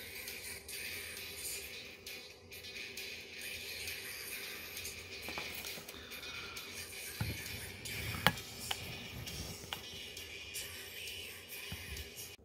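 Mini musical Tesla coil playing music through its corona discharge, its 4 MHz continuous-wave output modulated by an audio signal fed in through its audio jack. The music is quiet, with a few sharp clicks a little past the middle.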